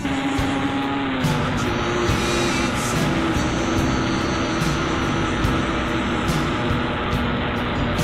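Motorcycle engine running at steady road speed, with constant wind rush on the microphone and background music underneath.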